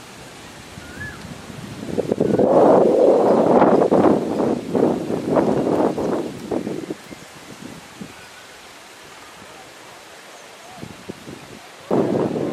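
Wind gusting across the camera microphone: a loud, irregular buffeting from about two seconds in to about seven seconds, then a steady outdoor hiss, and another gust at the very end.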